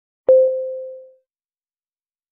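A single electronic beep: one steady mid-pitched tone with a sharp start that fades away within about a second. It is the signal to begin the timed preparation for a spoken test response.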